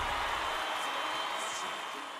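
A soft, even hiss with a faint high tone, slowly fading out: the tail of the soundtrack dying away.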